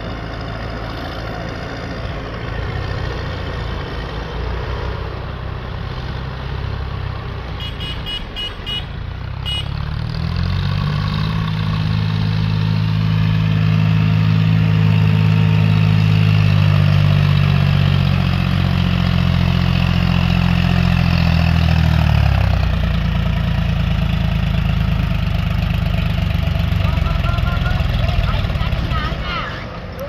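Diesel tractor engine running under load as it pulls a trailer up a dirt track. The note comes up around ten seconds in, holds steady and loud for about twelve seconds, then eases off.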